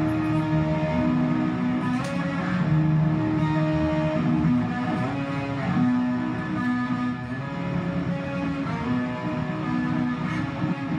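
Guitars playing together, long held chords and notes that change every second or two.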